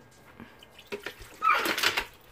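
Green apple cocktail mix poured from a plastic measuring cup onto ice in a plastic blender jar, splashing. The pour starts about one and a half seconds in, after a few faint ticks.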